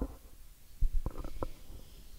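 Handling noise from a handheld microphone as it is gripped and set into a desk stand: a low rumble, then two sharp knocks a little under a second in and a few lighter clicks.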